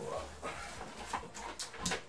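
Cardboard box and product packaging rustling and knocking as a boxed item is pulled out of a large shipping carton, with a short voice-like sound at the start.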